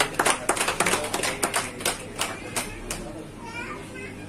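Scattered applause from a few people, irregular sharp handclaps that die away about three seconds in, followed briefly by a person's voice near the end.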